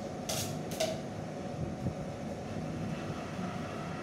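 Cake-decorating turntable spun by hand: two quick pushes in the first second, each a short rush of sound, then the turntable turning on with a low, steady running noise.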